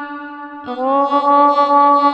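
A voice chanting a Sanskrit mantra in long held notes. A new note begins about two-thirds of a second in, rises slightly at its onset, then holds steady.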